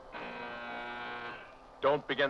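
A steady, held horn-like tone with many overtones, lasting about a second, on the soundtrack of a vintage science-fiction film; a man's voice comes in near the end.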